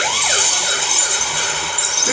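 Audience laughing and applauding after a punchline: loud, even clapping that starts suddenly, with a voice or two rising above it at the start.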